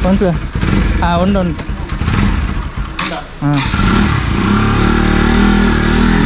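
Motorcycle engine running, then revved about three and a half seconds in and held at a steady higher speed, its tone rising slightly.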